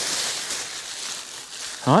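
Plastic wrapping rustling as a chain-link fly curtain is pulled and unrolled out of it by hand, a steady soft hiss-like rustle.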